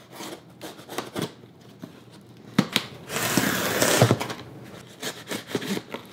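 A cardboard shipping box being opened with a small knife: clicks and scrapes as the blade works the packing tape, then a loud ripping stretch about three seconds in as the tape is slit and the flaps pulled open. Rustling and clicks of the flaps and the wood-shaving packing follow near the end.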